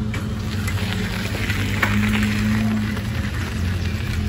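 A steady low hum under a constant background hiss of outdoor noise.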